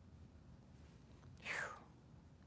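A man's short breath about one and a half seconds in, over quiet room tone.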